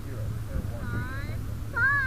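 High-pitched children's voices calling out some way off, heard through the rocket-mounted camera, with a louder call just before the end, over a low steady hum.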